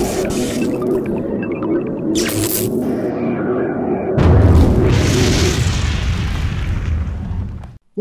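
Logo intro sting: a low synthetic drone with a brief whoosh, then a deep boom about four seconds in, swelling and fading out near the end.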